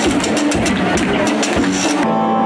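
Live band playing an upbeat number, with a drum beat and percussion under saxophone, washboard, bass and electric guitar.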